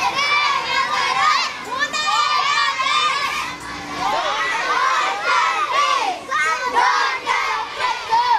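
A crowd of children shouting together, many high voices overlapping and calling out continuously.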